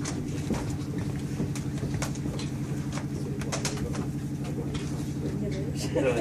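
A steady low hum with several even tones runs under the room, with scattered sharp clicks on top of it, two of them close together about three and a half seconds in, and faint murmured voices.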